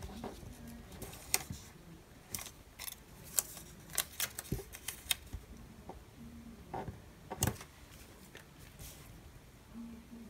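Faint handling of a paper sticker: scattered small clicks, ticks and rustles as it is peeled from its backing and pressed onto a planner page.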